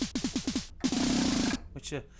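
FM-synthesised 909-style snare from the OXE FM Synth's '909 Snare' preset, played as a fast run of short hits, each dropping quickly in pitch. About a second in comes a longer noisy snare burst lasting under a second, then one more hit near the end.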